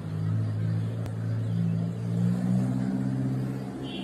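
A motor engine running with a low, steady drone, its pitch stepping up slightly a little under three seconds in.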